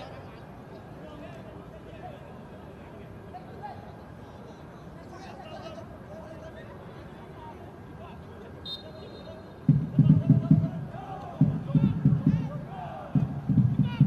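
Football stadium crowd ambience: a low murmur of fans with faint scattered shouts. About ten seconds in, loud deep drum beating starts up in the stands and comes in three clusters.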